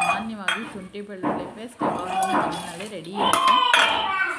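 Steel clinking and rattling from a stainless-steel mixer-grinder jar filled with garlic cloves and ginger for a ginger-garlic paste, with a sharp click about half a second in. A voice talks low underneath, and a loud high-pitched cry rises and falls near the end.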